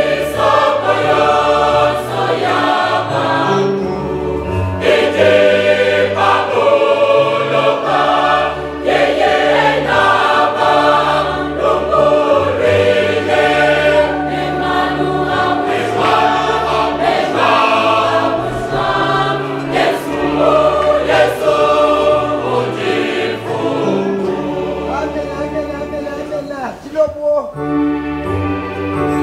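Mixed choir of men and women singing a Tshiluba gospel hymn in continuous sung phrases, with a brief drop in loudness near the end as the verse closes.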